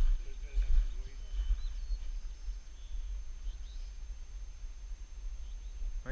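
Low rumble of wind buffeting the camera microphone, rising and falling, with faint distant voices in the first second and a few brief high bird chirps about a second and a half in.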